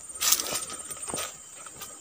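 A brief rustle and a few light clicks over a steady, high-pitched drone of insects such as crickets.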